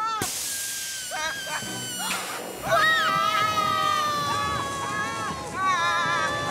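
Cartoon soundtrack: a short hiss just after the start, then background music with the two children's long, wavering screams from about halfway through.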